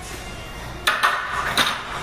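Faint background music, then two sharp clatters, the first about a second in and the second about half a second later.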